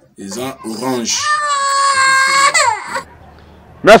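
A toddler crying: a few short whimpers, then one long high wail of about a second and a half that drops away near the end.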